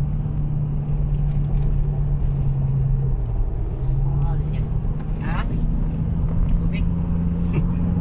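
Car running along a highway, heard from inside the cabin: a steady low engine and road rumble with a hum that dips briefly about three seconds in.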